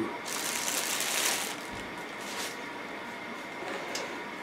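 Clear plastic packaging bag crinkling and rustling as it is handled. The sound is loudest in the first two and a half seconds, then turns into fainter handling noise.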